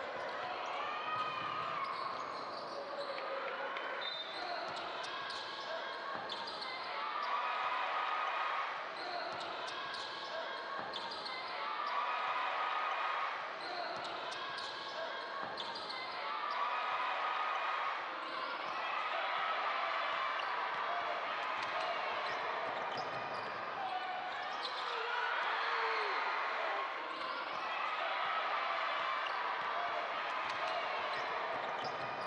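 Basketball game sound in a large gym: a ball dribbling on the hardwood court, with voices calling out.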